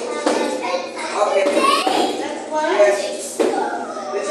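Children's voices chattering and calling out, unbroken by any clear words, with two sharp impacts, one just after the start and one near the end.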